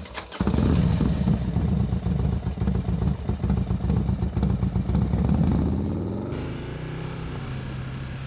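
Motorcycle engine running with a rapid pulsing beat. About six seconds in it drops to a quieter, lower, steady note.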